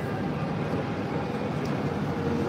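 Steady city street traffic noise, an even wash of sound with no single event standing out.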